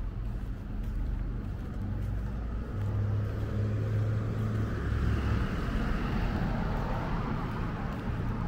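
Street traffic passing: a small bus's engine hum grows through the middle, and a hiss of tyres on asphalt builds as it drives by about five to seven seconds in.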